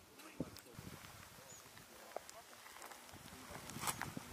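Quiet outdoor ambience with faint distant voices and a few short, soft clicks.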